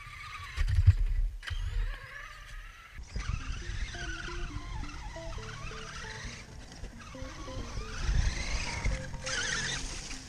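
RC monster truck driving close past the camera, its motor whining up and down over a low rumble in the first two seconds. About three seconds in, background music begins, with the truck's motor whine and rumble still heard under it, rising again near the end.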